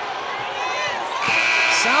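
Arena scoreboard horn sounding the end of the first half of a basketball game: one long steady tone starting about a second and a quarter in.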